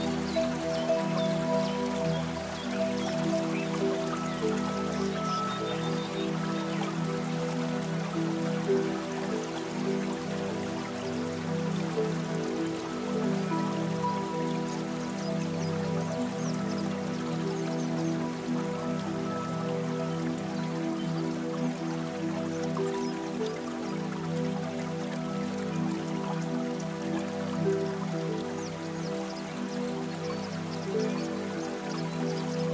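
Soft, slow piano music with sustained notes, and faint raindrops dripping in the background.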